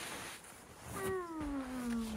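A person's long vocal call, one drawn-out sound that slides steadily down in pitch for about a second, starting about a second in.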